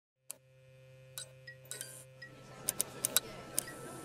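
Intro sound effects for an animated neon sign: a steady low electrical hum with a run of sharp clicks and glassy clinks, the loudest just past the three-second mark, over faint music building underneath.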